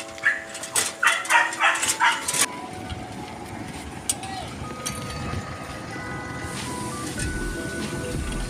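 A dog barks several times in the first couple of seconds. Then faint music with held notes plays over a low engine rumble, which grows louder near the end.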